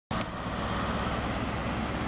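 Diesel engine of a Class 43 HST power car running steadily under power as the train pulls out of the station, with the rumble of the train.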